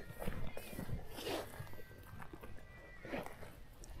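Footsteps and soft rustling through low scrubby vegetation as a person climbs down a riverbank, in irregular scuffs.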